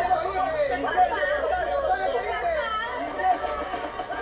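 Several people talking at once, an overlapping chatter of voices with no single clear speaker.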